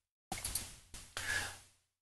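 A man breathing out audibly in three short breaths. Each starts sharply and fades, over a call line whose audio drops to dead silence between them.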